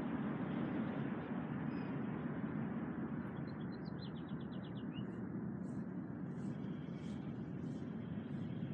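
Steady low rumble of distant traffic. A small bird gives a quick trill of about eight rapid notes around four seconds in, followed by faint high chirps.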